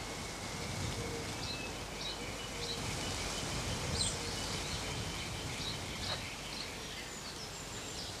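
Outdoor garden ambience: small birds chirping, short high chirps about once a second, over a steady background hiss.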